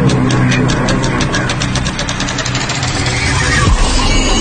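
Electronic background music: a ticking beat that speeds up into a build over a low steady hum, then gives way to a new section just before the end.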